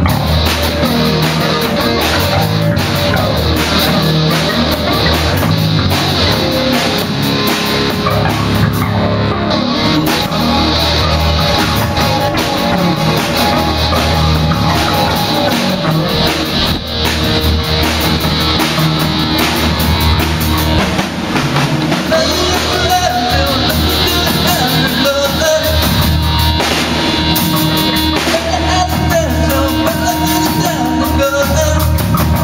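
Live rock band playing continuously: drum kit and electric guitars, amplified through PA speakers.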